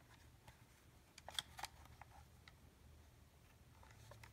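Near silence, with a few faint clicks and taps as a plastic tuner case is turned over in the hands. A small cluster of clicks comes about a second and a half in.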